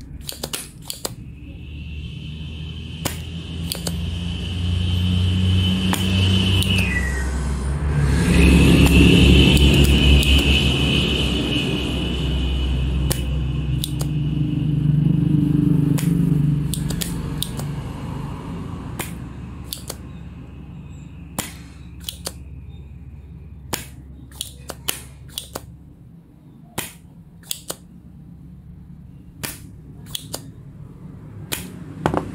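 Spring-loaded desoldering pump (solder sucker) snapping again and again, sharp clicks as it is cocked and fired to suck solder from the pins of an IC on a power-supply board. Under the clicks runs a steady low hum, and a louder drone swells in the first half and fades out.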